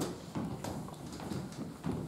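Children's footsteps on a hard hall floor: a quick, uneven run of steps, about three or four a second.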